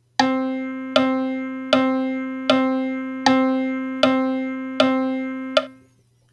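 Sibelius notation-software piano playback of seven even quarter notes on middle C, a little under one and a half notes a second. Each note rings until the next, and the notes fall on each tick of a clock-like pulse click. The notes stop shortly before the end.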